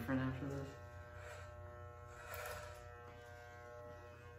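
Corded electric hair clippers running with a steady buzz while cutting long hair.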